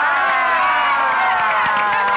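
A group of people shouting and cheering together, several long high voices overlapping and slowly falling in pitch: an excited reaction.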